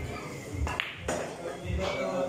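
Pool shot: the cue tip strikes the cue ball, then a sharp click of ball hitting ball about two-thirds of a second in.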